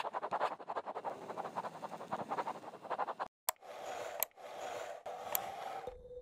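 Chalk scratching on a chalkboard in quick, dense strokes. About three seconds in it breaks off briefly, then gives way to a steadier rubbing scrape with a few sharp ticks.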